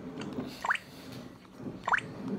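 Two short rising 'bloop' blips, like water drops, a little over a second apart, from a VTech Kidizoom DX2 smartwatch as its touchscreen menu is handled.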